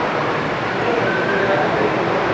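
Steady background noise: a dense, even rumble and hiss at a fairly high level, with no clear events in it.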